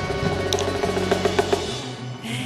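Live band music: a few sharp drum strikes over sustained instrument tones with a strong bass. The low bass drops out near the end.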